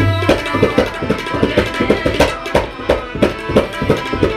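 Tabla being played in a fast run of sharp strokes, mostly on the right-hand drum, with a deep bass stroke at the start, over steady held harmonium notes.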